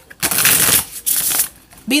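A deck of tarot cards being shuffled by hand, in two runs of card rustling with a short break between them, the first the longer.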